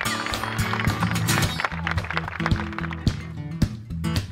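Background music with a steady beat and sustained bass notes.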